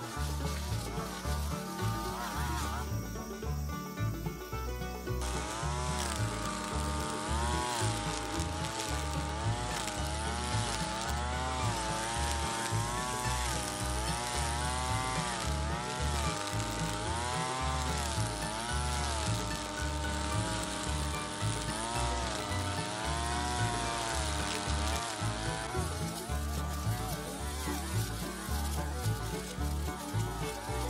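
Backpack brush cutter's engine running while cutting grass, its pitch rising and falling about once a second as the cutting head is swung back and forth, with background music underneath.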